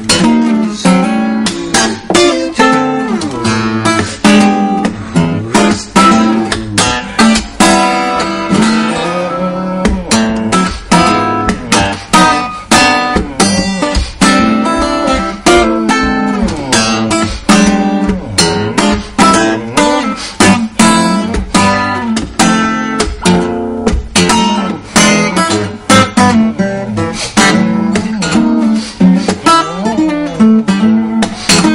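Solo fingerstyle acoustic guitar playing a jazzy blues, picked bass and melody notes with regular percussive clicks on beats two and four: the right-hand thumb and nail knock the strings against the frets for a sharp muted "chi".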